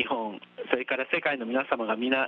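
Speech only: a voice talking over the space-to-ground radio link, with a thin, telephone-like sound.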